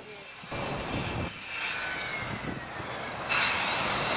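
A car passing close by on the street, a rushing sound that comes in about half a second in and grows louder near the end.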